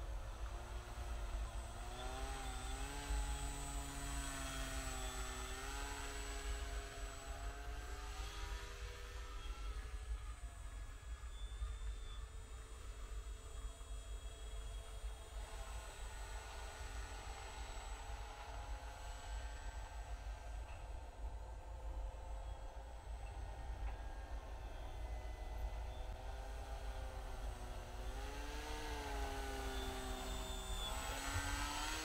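Motor and propeller of an RC paramotor in flight, a hum whose pitch rises and falls with the throttle. It is louder near the start and again near the end as the model passes close, and fainter in between.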